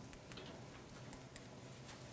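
Quiet room tone in a pause between speech, with a few faint ticks or clicks.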